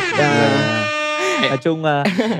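A loud, drawn-out horn-like celebratory sound, rich in overtones, held for about a second and a half before stopping.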